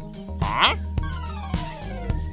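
Cartoon sound effects over background music: a short rising swoop about half a second in, then a falling whistle-like glide through the second half.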